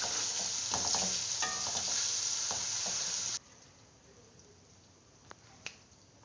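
Browned onions with ginger and garlic sizzling in hot oil in an aluminium pot, stirred with a spatula that scrapes against the pot. The sizzle cuts off suddenly a little past halfway, leaving a quiet room with two light clicks near the end.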